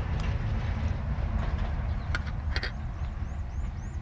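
Low, gusty rumble of wind on the microphone, with two sharp clicks of a metal spoon against an aluminium serving tray a little after halfway. Over the last second, short high chirps repeat about three times a second.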